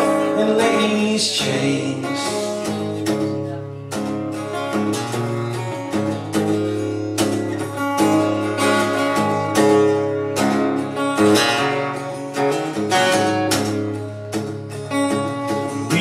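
Steel-string acoustic-electric guitar strummed and picked in a steady folk-country rhythm, an instrumental break between sung verses.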